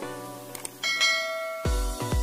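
Subscribe-button animation sound effects over electronic background music: a short click about half a second in, then a bright bell ding that rings on. The music's heavy bass beat comes in near the end.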